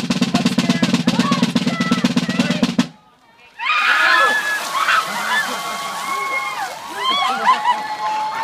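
Fast snare drum roll on a drum kit that cuts off about three seconds in. After a short pause, buckets of ice water splash over a group of people, who shriek and yell.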